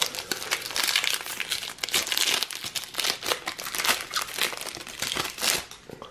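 Foil wrapper of a Panini Adrenalyn XL trading-card booster pack crinkling as it is torn open by hand, a dense crackle that dies away shortly before the end.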